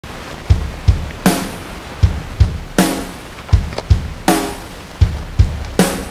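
Background music: a drum beat with a bass drum hitting in pairs and a snare about every second and a half.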